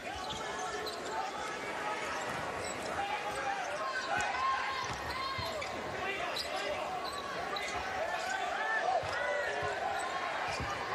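Basketball dribbled on a hardwood court and sneakers squeaking as players move, over the steady noise of the arena crowd.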